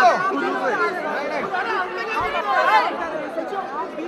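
Crowd chatter: many voices talking over one another at close range, with no single speaker standing out.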